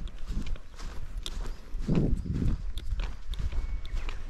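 Footsteps of a person walking on dry, short grass: irregular soft thuds and light crunches with each step, one heavier thud about two seconds in, over a steady low rumble.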